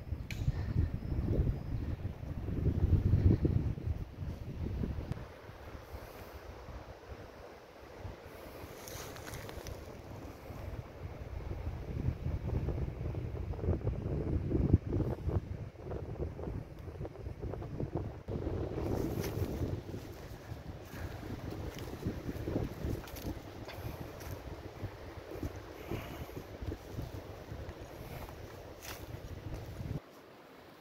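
Wind buffeting the microphone in uneven gusts, a low rumble that swells and fades. Scattered crunches of footsteps on dry leaves and twigs run through it.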